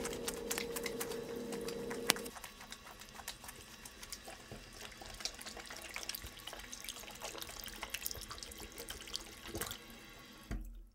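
Hands being washed under a running tap: water running and splashing into a sink, with many small splashes and drips. A steady hum underneath stops about two seconds in.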